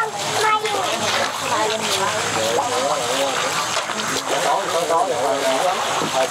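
Shallow river water splashing and churning as a shoal of fish moves at the surface, under indistinct voices talking, with a laugh near the end.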